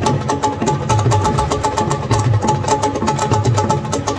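Burundian drum ensemble playing: large drums beaten with wooden sticks in a fast, steady rhythm, deep beats recurring about every half-second under a stream of rapid, sharp stick strikes.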